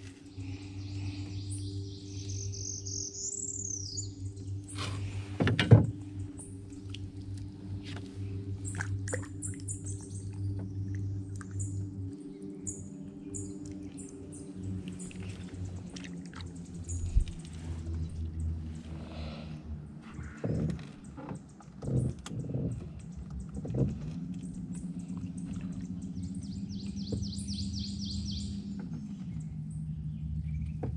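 Birds singing and calling over a steady low hum: a warbling song near the start and a quick trill near the end. Scattered clicks and knocks sound throughout, the loudest a sharp knock about six seconds in.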